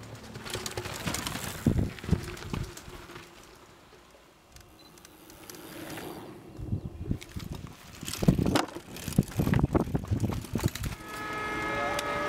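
Mountain bike riding over rough ground: irregular rattling and knocking clatter, quieter a few seconds in and busiest in the last third.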